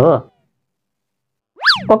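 A short cartoon 'boing' sound effect near the end: a whistle-like tone that swoops quickly up in pitch and straight back down. Before it, a voice trails off, followed by about a second of dead silence.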